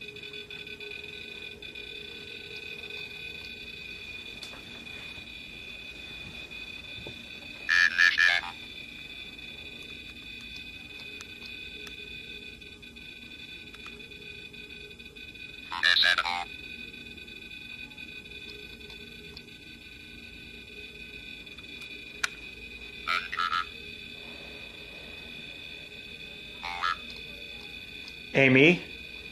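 A ghost-hunting detector device going off in short electronic chirps: one about eight seconds in, another about sixteen seconds in, and two shorter ones near the end. Under them runs a steady high-pitched electronic whine.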